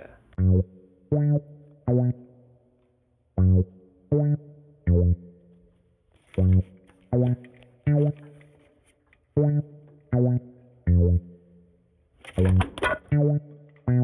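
Music: plucked bass guitar notes in repeated phrases of three, each note ringing briefly before the next, with short pauses between phrases.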